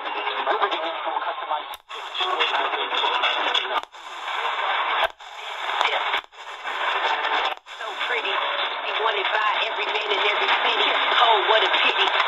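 Distant AM stations' talk coming from the small speaker of a C.Crane CC Skywave portable radio on the evening mediumwave band, thin and cut off above and below like telephone audio. It is broken by five brief silent dropouts as the radio is stepped up from 1650 to 1680 kHz, where it settles on WPRR, Grand Rapids.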